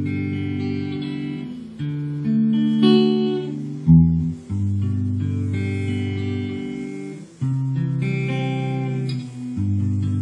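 Epiphone Special electric guitar strummed: chords struck and left ringing, changing every second or two, the sharpest strum about four seconds in.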